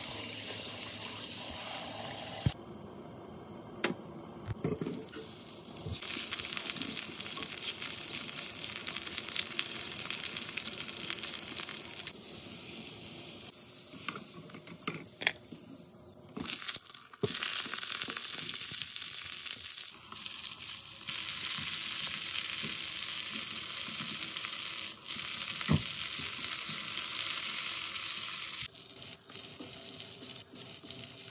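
Food sizzling and frying in hot oil in a non-stick wok, stirred with a spatula, heard in several stretches broken by cuts. At the very start, tap water runs onto chicken livers in a plastic colander.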